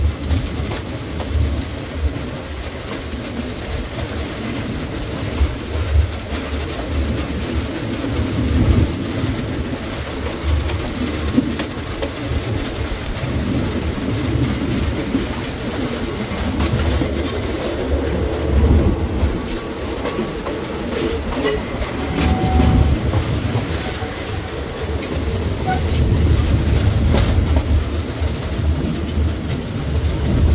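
Passenger train carriages running on the rails, heard from an open window: a steady low rumble of the wheels with clickety-clack over the rail joints, and a few sharper clicks in the second half.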